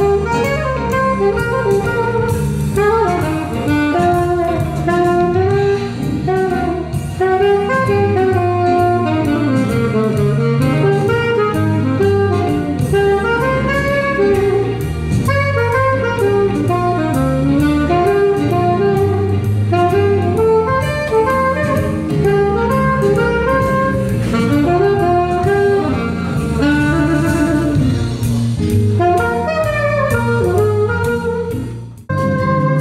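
Saxophone playing a flowing jazz melody over a backing track with drums and bass.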